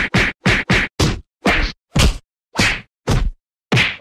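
A series of about ten sharp whack sound effects, quick at first and then further and further apart, with silence between the later ones.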